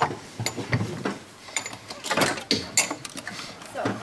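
Light metallic clicks and knocks, about eight scattered over a few seconds, from the steering column's metal shaft and joint being worked through the hole in the car's bulkhead.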